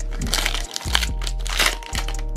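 Foil booster-pack wrapper of a Pokémon card pack crinkling and crackling as it is torn open, over steady background music.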